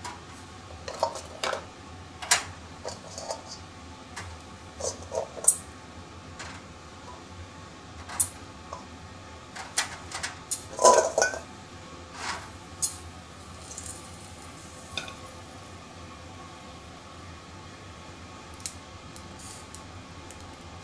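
Hard oyster shells being set down on the metal grill of a cassette gas stove: irregular clacks and scrapes of shell on metal, a louder clatter of several knocks about eleven seconds in. After about thirteen seconds the knocking stops, leaving only a faint steady background.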